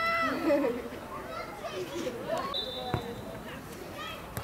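Players and onlookers calling out across a football pitch. About two and a half seconds in comes a short, steady, high referee's whistle blast, and half a second later a single thud of the football being kicked.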